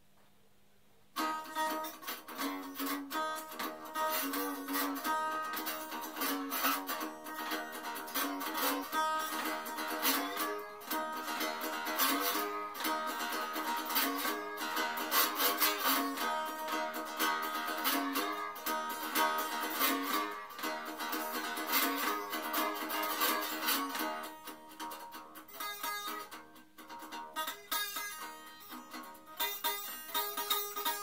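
Homemade two-string broom-handle slide guitar with a Quality Street sweet-tin resonator, played acoustically. It starts about a second in with rhythmic picked notes under a slide and runs on steadily, softening for a while near the end.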